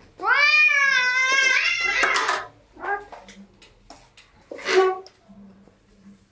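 Domestic cat meowing: one long, drawn-out meow of about two seconds, then two short meows about three and five seconds in.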